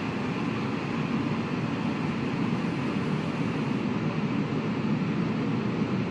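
Steady low rumbling noise with no tune, beat or voice: the sound bed of an animated closing title. It sets in abruptly.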